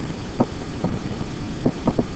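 About four short clicks of a pen stylus tapping and writing on a tablet surface, over a steady background hiss.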